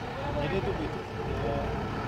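Forklift engine running with a low, steady rumble while the forklift lifts a wooden crate off a flatbed truck, with faint voices.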